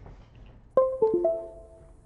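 Windows device-connect chime: a short run of four quick ringing notes, starting about three quarters of a second in and fading out, the sign that the hard drive plugged in through a USB adapter cable has just been recognised.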